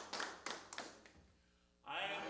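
Hands clapping in a steady rhythm, about four claps a second, fading away about a second in.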